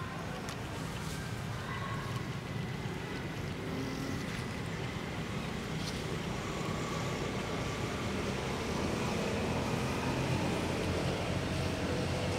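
Steady low rumble of distant motor traffic, growing slightly louder toward the end.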